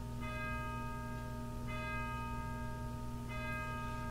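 Bell chimes struck three times, about a second and a half apart, each tone ringing on and overlapping the next.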